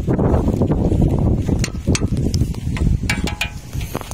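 Wind buffeting the microphone outdoors, a loud uneven rumble, with a few light clicks in the second half.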